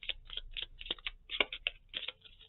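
A deck of tarot cards shuffled overhand by hand: a quick, uneven run of light card clicks.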